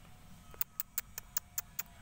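A quick, even run of seven sharp clicks, about five a second, starting about half a second in.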